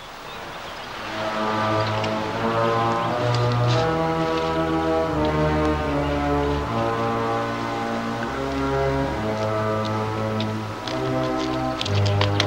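Dramatic orchestral film score: low, sustained brass-like chords that shift every second or so, swelling up about a second in.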